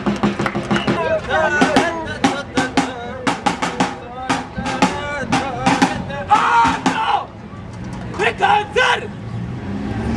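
Irregular sharp percussive hits, several a second, with high, sliding vocal calls over them near the start, in the middle and near the end.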